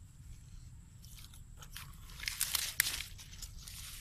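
Crackling and rustling of dry vegetation and a nylon mosquito net being handled, the crackles growing louder about two seconds in.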